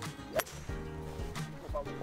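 A single sharp crack of a golf club striking the ball on a tee shot, about half a second in, over background music.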